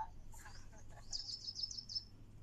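A small bird chirping: a quick run of high, sharp notes, about eight or nine in under a second, starting about a second in.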